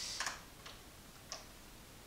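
A few faint, isolated clicks over quiet room tone, about one every half second to second.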